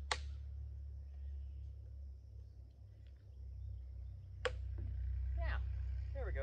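Mallet striking an old chisel driven into the wooden carving: one sharp knock at the start, then another sharp knock about four and a half seconds in.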